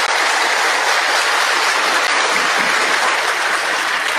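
A large seated crowd of members applauding, a steady even clatter of many hands clapping that holds without a break.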